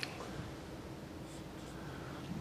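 A marker on a whiteboard: a sharp tap at the start, then a few short, faint marker strokes drawing an arrow, over a steady low room hum.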